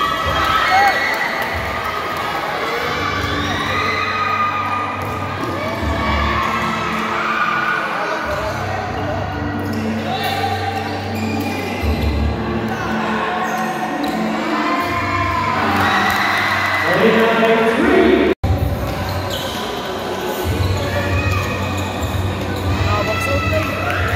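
Live sound of an indoor basketball game: a ball bouncing on the hardwood court under overlapping shouts from players and spectators, in a large gym hall. The sound cuts out for an instant about 18 seconds in.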